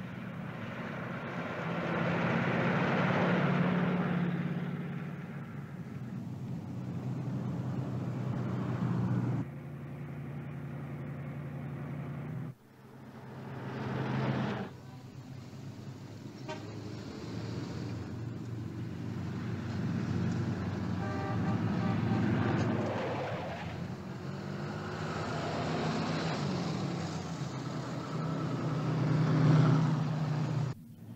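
Road vehicle sounds: a truck engine running on the highway, then town traffic with car horns tooting. The sound changes abruptly several times as the scene shifts.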